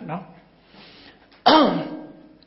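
A man clearing his throat once into a close microphone: a short, loud rasp about one and a half seconds in.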